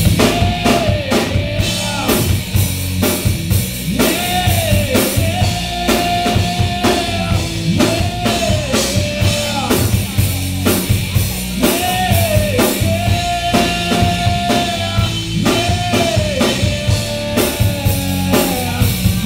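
Live rock band playing: drum kit with kick and snare, bass guitar and electric guitar. A melodic line rises, holds and falls in a phrase that repeats about every four seconds.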